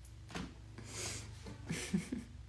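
A woman's quiet, breathy laughter in a few short puffs over a low steady hum.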